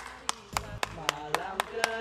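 One person clapping alone, a steady run of sharp hand claps at about four a second.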